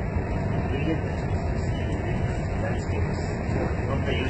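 Steady low rumble and hiss of a high-speed train heard from inside its passenger cabin while it runs at about 198 km/h.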